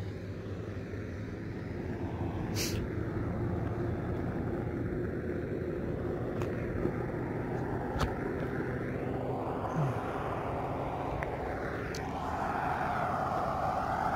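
Pickup truck driving along a highway, heard from inside the cab: a steady engine and tyre rumble with a few faint clicks, the road noise swelling near the end.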